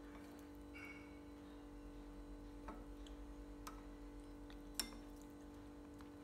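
Faint, sparse clicks of chopsticks and a metal spoon against ceramic bowls and plates as food is picked up and moved to the rice bowl, three or four light ticks with the sharpest about five seconds in, over a steady low hum.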